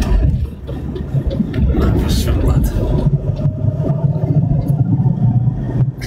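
A steady low rumble with muffled voices over it.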